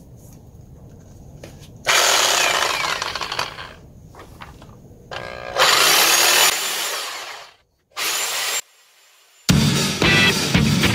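Corded reciprocating saw cutting grooves into the metal shell of a sailboat's cutlass bearing in the stern tube. It runs in three bursts that start and stop suddenly, the first two about two seconds each and the last brief, and music comes in just before the end.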